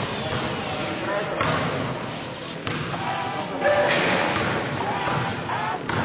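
Basketball game: a ball bouncing on the court with a few thuds, amid voices of players and spectators.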